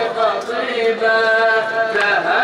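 A male radood chanting a Shia latmiya lament into a microphone in a drawn-out melodic line, the pitch bending at first and then held on one long steady note for the last second or so.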